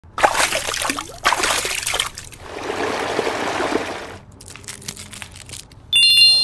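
Paintbrush swished in a plastic cup of rinse water: splashing and trickling in several bursts, then a run of small clicks and taps. A bright ringing ding starts right at the end.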